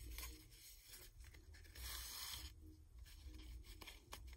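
Faint rustling of ribbon being handled and stitched by hand with needle and thread, with a longer scratchy swish about two seconds in as the thread is drawn through the ribbon.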